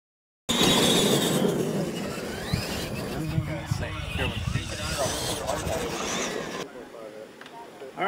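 Radio-controlled monster trucks running on a dirt track: motors and tyres, starting abruptly about half a second in and dropping away near the end. People talk over them.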